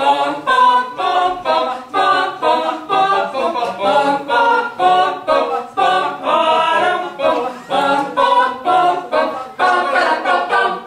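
Small mixed choir singing a cappella in a steady pulse of short, detached syllables, about two to three a second.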